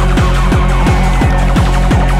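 Hardtek / free tekno DJ mix: a fast, steady kick drum, about three beats a second, each kick dropping sharply in pitch, under electronic synth lines.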